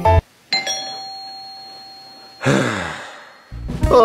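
Doorbell chime ringing once about half a second in, a single clear tone that dies away over about two seconds, followed by a short rushing noise.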